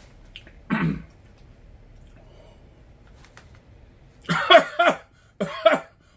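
A man coughing and clearing his throat while eating a hot mustard tortilla chip: one short throaty sound about a second in, then two harsher coughs near the end. The mustard's heat is catching in his throat and nose.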